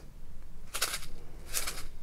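Clear plastic zip bag of square resin diamond-painting drills being handled, two short crinkling rustles about 0.75 s apart.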